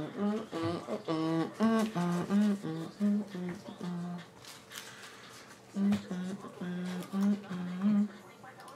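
A man humming a tune without words: short held notes stepping up and down in two phrases, with a pause about four seconds in.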